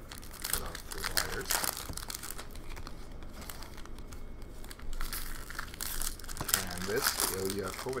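A hand-held stack of hockey trading cards being flipped through, card after card sliding off the stack and flicked over in quick, irregular swishes with a papery crinkle.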